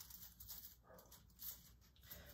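Near silence, with faint rustling of mesh netting being handled on a grapevine wreath.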